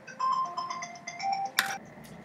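A short electronic melody of a few clear, steady notes that repeats, with a sharp click about one and a half seconds in.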